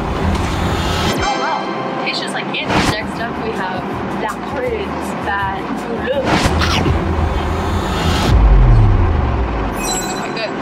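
A woman talking over background music. Near the end, a loud low edited sound effect drops in pitch.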